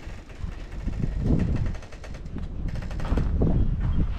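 Wind buffeting the microphone in a low rumble that swells twice, with footsteps crunching on dry, sandy ground.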